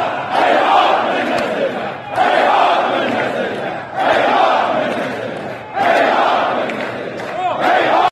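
A crowd of protesting workers chanting slogans in Persian in unison, a new loud phrase starting about every two seconds, five in all.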